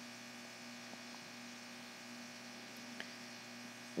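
Faint, steady electrical hum in the recording, with a single faint click about three seconds in.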